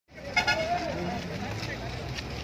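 Voices talking over street traffic noise, with two short vehicle horn toots about half a second in.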